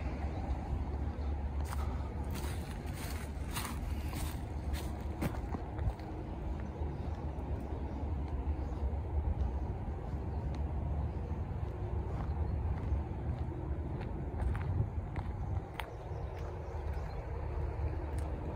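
Footsteps on a dirt woodland trail, with scattered light clicks and knocks, mostly in the first few seconds, over a steady low rumble.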